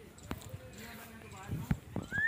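A few dull thumps of footsteps on dry dirt ground, with faint voices in the distance.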